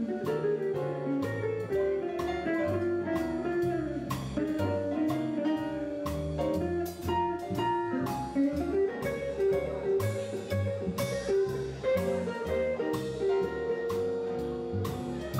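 Jazz quartet playing an instrumental swing passage: a guitar line over piano, an upright bass walking about two notes a second, and drums keeping time on the cymbals.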